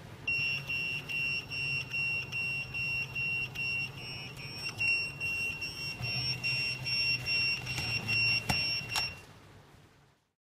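Restaurant coaster pager beeping to call, a high repeated beep about twice a second, over a low hum. Two sharp clicks come near the end as the beeping stops.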